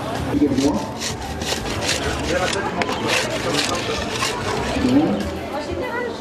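Indistinct background voices with many short, irregular scraping and rubbing noises.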